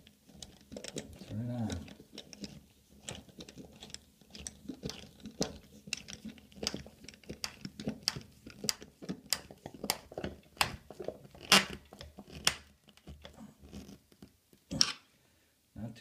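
Screwdriver turned by hand, driving a screw through a chrome toilet paper holder post into a wooden wall stud. It makes a long run of irregular small clicks and creaks, about one or two a second, which get louder after the middle.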